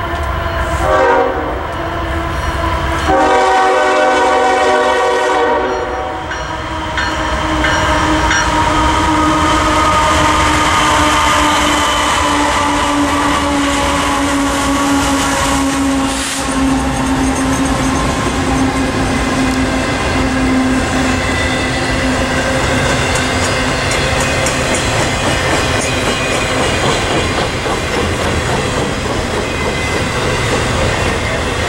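A CSX freight train hauled by three GE diesel-electric locomotives (ES44AH, AC4400CW, ES40DC) sounds its air horn, a short blast about a second in and a longer one from about three to six seconds. The locomotives then pass with a steady engine note that slowly drops in pitch. After them come the rumble and wheel clatter of intermodal cars rolling by.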